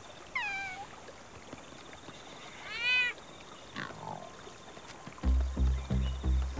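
Two meows from an animated cat character: the first a short falling call just after the start, the second rising and then falling about three seconds in. Near the end a low, evenly pulsing music beat comes in.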